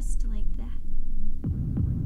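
Low, throbbing drone of a horror film score. About a second and a half in come two deep thuds close together, like a heartbeat. A woman's voice trails off at the start.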